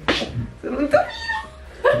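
A person's short, high-pitched voice sounds, sliding up and down in pitch, about half a second to a second and a half in.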